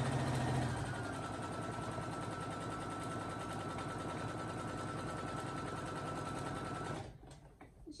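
Brother SE1900 sewing machine running at a steady speed, a fast even run of needle strokes over a motor whine, as it topstitches along a fabric edge. It stops about a second before the end.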